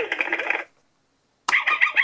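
Bubble Guppies school playset's electronic sound chip playing a recorded clip through its small speaker, which stops about half a second in. After a pause, a click of the toy's button about a second and a half in sets it playing again.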